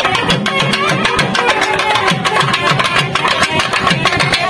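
Naiyandi melam folk band playing loud dance music, a fast, steady drumbeat under a held melody.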